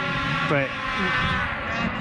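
A snowmobile engine running at high revs as the sled climbs the race hill, holding a steady pitch that rises slightly in the second half.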